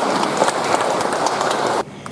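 Audience applauding, a dense patter of many hands clapping that cuts off suddenly near the end.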